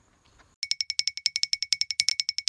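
A rapid, even train of short high-pitched chirps, about twelve a second, starting about half a second in.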